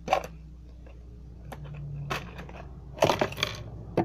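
Earrings and other small hard jewellery pieces clicking and rattling as they are handled in a container. There are a few scattered sharp clicks, then a quick cluster of clinks about three seconds in.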